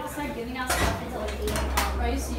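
Metal push bar of a glass exit door pressed to open it, giving a few sharp metallic clacks from the bar and latch in the second half.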